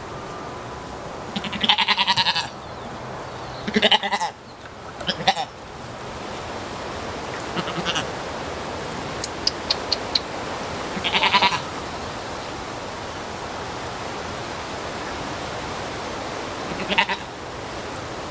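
Goats bleating several times: a long wavering bleat about two seconds in, another around eleven seconds, and shorter ones between, over a steady background hiss.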